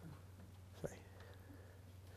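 Near silence between sentences of a talk: room tone with a low steady hum and one faint click a little under a second in.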